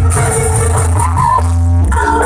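Loud live dangdut koplo music through a PA, with a heavy, steady bass line and a held pitched note in the middle.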